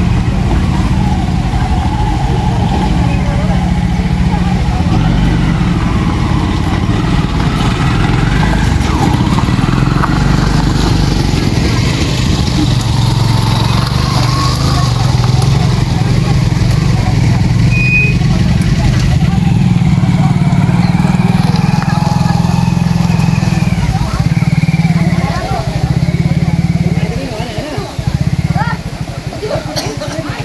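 Crowd chatter from many people over a loud, steady low rumble that breaks up in the last few seconds.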